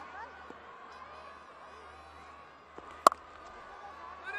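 A cricket bat striking the ball once, a single sharp crack about three seconds in, for a shot that runs away for four. Under it, a faint stadium-crowd murmur.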